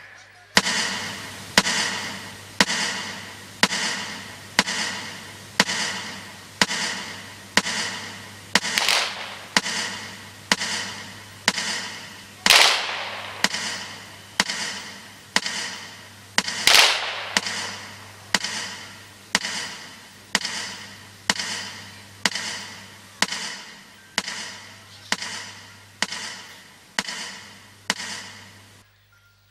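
A metronome ticks steadily about once a second over loudspeakers, marking a minute of silence. Each tick rings briefly. Three rifle volleys of an honour-guard salute, about four seconds apart, fall in the middle and are the loudest sounds.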